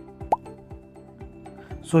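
Background music with steady sustained tones, and one short, quickly rising blip about a third of a second in.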